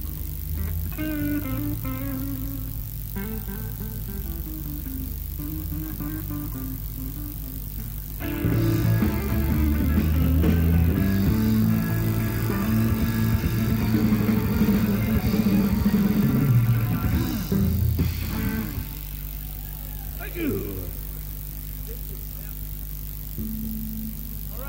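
Live blues-rock band between songs: quiet electric guitar and bass notes over a steady low hum, then about eight seconds in the band plays a loud full passage for roughly ten seconds before dropping back to scattered guitar notes.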